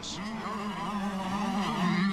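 125cc two-stroke motocross motorcycle engine held at high revs, a steady buzz that gets a little louder near the end.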